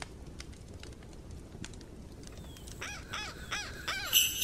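A crow cawing four times in quick succession near the end, over the faint crackle of a wood fire.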